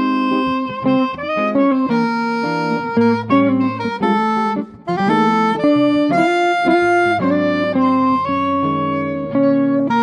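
Soprano saxophone playing a jazz melody of held and moving notes over a semi-hollow electric guitar's chordal accompaniment.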